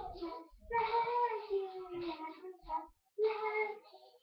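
A young girl singing, in three phrases with short breaks between them.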